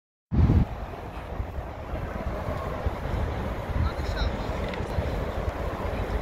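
Outdoor street ambience: a steady hum of road traffic with low rumble of wind buffeting the microphone, and a heavy low thump just after the sound begins.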